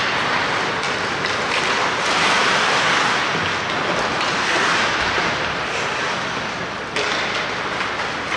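Ice hockey skates carving and scraping on the ice, a steady rushing hiss that swells and eases as players skate up the rink. A couple of sharp clacks come about a second in and again near the end.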